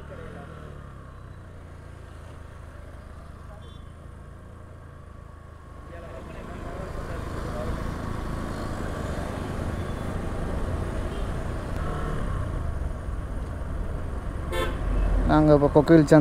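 A small motorcycle engine running steadily under way, a low hum. About six seconds in, the engine and road noise grow louder and stay up.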